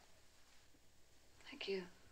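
Faint room tone for over a second, then a single softly spoken, breathy word near the end.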